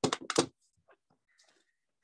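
A quick run of four or five sharp clicks and taps of small hard objects set down on a tabletop, over in about half a second, then a few faint ticks.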